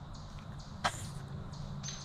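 A single short, sharp click a little under a second in, over faint steady outdoor background noise with a low rumble.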